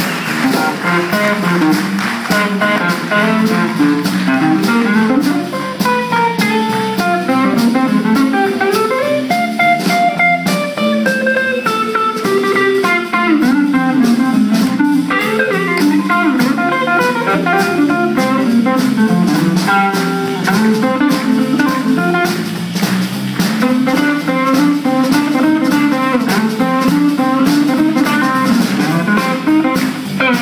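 Live blues band playing an instrumental passage: guitars over a drum kit keeping a steady beat, with a melodic lead line.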